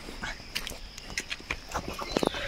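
Scattered light clicks and taps from a bamboo skewer of roasting meat and sticks being handled at a campfire.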